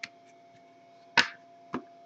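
Trading cards being handled by hand: three short sharp clicks and snaps, the loudest a little past the middle.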